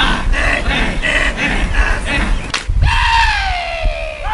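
A football team shouting out the count of a stretch in unison, short group shouts about three a second. Near the end a long falling call.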